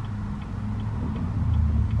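Turn-signal or hazard flasher ticking evenly, a little over two clicks a second, in the cabin of a Chevrolet Camaro ZL1, over the low steady idle of its supercharged V8. The idle swells slightly near the end.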